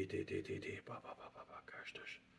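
A man's voice speaking softly in prayer, with words too low to make out, fading into whispered syllables near the end.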